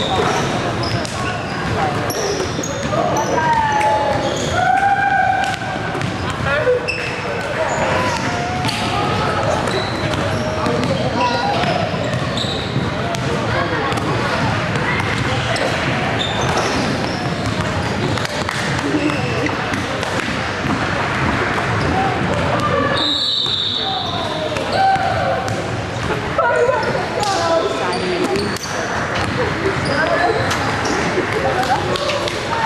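Basketballs bouncing on a hardwood gym floor amid a continual hubbub of voices, echoing in a large gymnasium.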